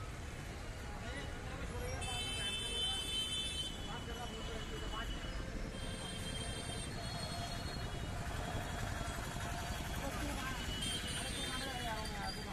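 Busy city street ambience: a steady low rumble of traffic with the background chatter of a crowd. Brief high-pitched tones cut through three times, about two, six and eleven seconds in.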